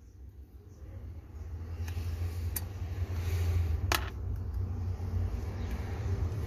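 A low steady rumble in the background, swelling through the middle, with three light clicks as new carbon brushes are pressed down into a starter motor's brush holder with fingers and a small screwdriver; the clearest click comes about four seconds in.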